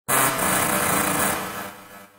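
Harsh, distorted electronic noise burst opening an aggrotech track, with a buzzing mechanical grind under it; it starts abruptly and fades away over the last half second.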